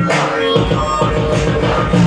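Live rock band playing an instrumental passage: held pitched notes over drums, with a bright crash about once a second.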